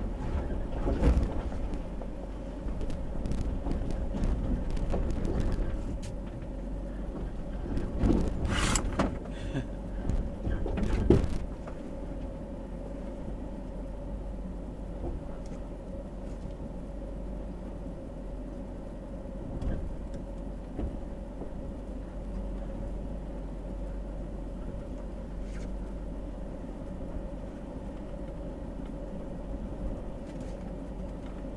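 Nissan Titan's V8 running as the truck crawls up a rough dirt trail, heard from inside the cab. Loud knocks and rattles from the truck jolting over ruts come several times in the first dozen seconds, then the running settles and steadies.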